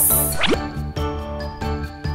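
Upbeat children's background music with a steady beat, with a quick rising pop-like sound effect about half a second in.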